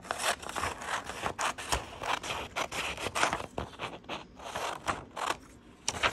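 Scissors cutting through printer paper in a run of quick snips, trimming the excess margin off a paper template.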